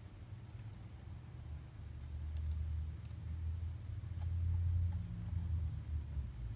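Faint small metallic clicks and ticks from set screws being threaded by hand into a ski's mounting bracket, scattered irregularly over a low steady hum.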